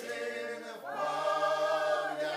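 A small mixed group of men's and women's voices singing a Ukrainian riflemen's folk song a cappella. After a breath at the start, they begin a new phrase that swells into a louder held chord about a second in.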